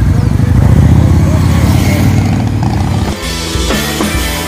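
Harley-Davidson motorcycle V-twin engine running loud as the bike rides past close by, a rapid low pulsing that starts suddenly and gives way to music about three seconds in.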